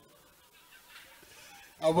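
A man's voice through a handheld microphone. A quiet pause with only faint background noise, then he starts speaking again near the end.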